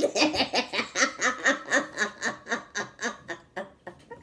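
A woman laughing: a long run of quick, even laugh pulses, about five a second, that trails off and stops shortly before the end.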